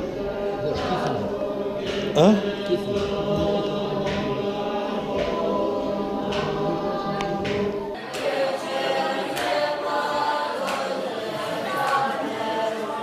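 A large group of young Buddhist monks chanting scripture in unison, a continuous blend of many voices. A short loud rising call cuts through about two seconds in.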